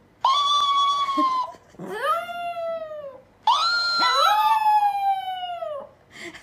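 A dog howling in three drawn-out calls, each rising at the start and sliding down in pitch at the end; the last is the longest.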